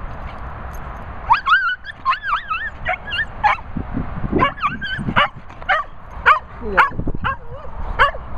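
Dog yipping and whining in a rapid string of short, high calls that bend up and down, starting about a second in, with a few lower, falling calls near the end.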